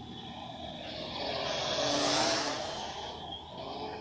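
Small quadcopter drone flying past close to the microphone: its propeller whine and rush swell up, peak just past the middle and fade away.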